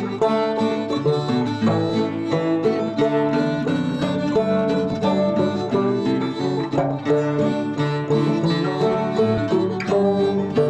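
A fiddle tune played by banjo, guitar and fiddle together in an online JamKazam jam session. This is the fiddler's headphone mix, so the fiddle sits low behind the banjo and guitar.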